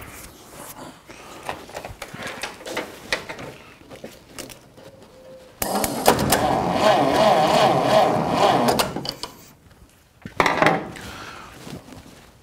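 Starter motor cranking the 1940 GAZ-M1's four-cylinder side-valve engine for about three and a half seconds, starting about halfway through, with no fuel in it, so it does not fire. This is a crank to check the ignition for spark at the plugs. A shorter burst follows near the end, after faint clicks of handling at the start.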